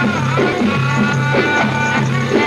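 Upper Egyptian Saidi folk music: a steady drum beat, several strokes a second, under a held, wavering melody line and a low drone.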